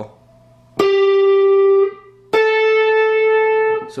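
Electric guitar, a Telecaster-style solid-body, playing two single picked notes, each held for a second or more: first the 12th fret on the G string, then a step higher at the 10th fret on the B string.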